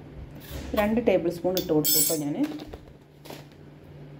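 Stainless steel kitchen vessels clinking: a few short metallic clinks, the brightest and most ringing about two seconds in and another just after three seconds.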